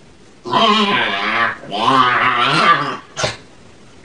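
A pug lying on its back vocalizing in two long, wavering growls of about a second each. A brief sharp burst of sound follows near the end.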